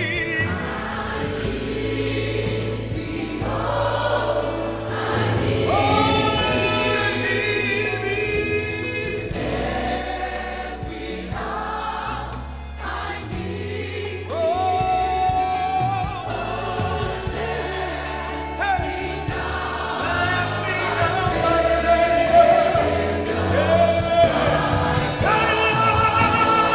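Gospel choir singing a slow worship song in parts, over sustained low bass notes from the accompaniment.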